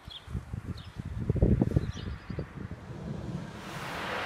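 Wind buffeting the microphone in uneven gusts, loudest about a second and a half in, with a few faint bird chirps over it; a steady hiss rises near the end.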